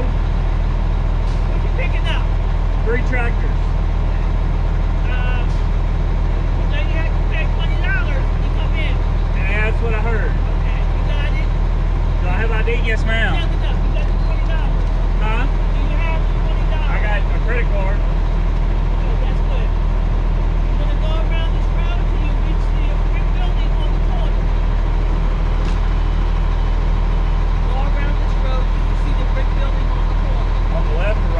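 Diesel engine of a 2000 Freightliner FLD 112 semi truck idling steadily, heard from inside the cab, under people talking in low voices.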